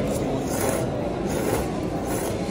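A person slurping noodles through the lips, several short noisy slurps, over a steady background hum.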